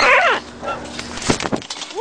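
A young scarlet macaw's short, whiny call falling in pitch, followed by a few sharp clicks about two thirds of the way through.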